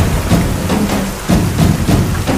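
Heavy rain falling steadily, mixed with music that has low sustained notes, and a few sharp hits.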